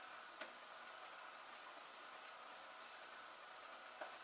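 Slider bed belt conveyor running faintly and steadily, with one light click about half a second in.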